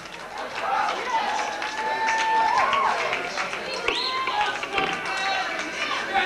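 A concert crowd cheering and shouting between songs. One long, high, held tone rises above it about a second in and bends at its end, and a short rising cry follows near the fourth second.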